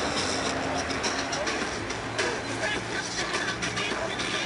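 Steady traffic noise from a busy city road, with buses and cars driving past. People's voices mix in with it.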